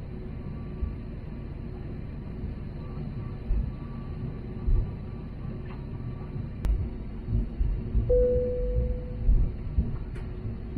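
Airliner cabin noise while taxiing: a low, steady engine rumble with occasional bumps. A single sharp click comes near seven seconds, and a brief steady tone just after eight seconds.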